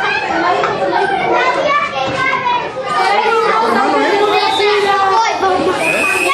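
Many children talking and shouting at once while they play, their voices overlapping.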